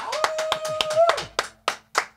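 A few people clapping in applause in a small room, with a steady held tone sounding for about the first second.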